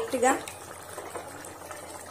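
Mutton curry gravy simmering in an aluminium pot, a steady bubbling.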